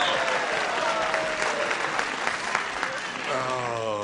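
Studio audience applauding and laughing, dying away over a few seconds; a man's voice starts up near the end.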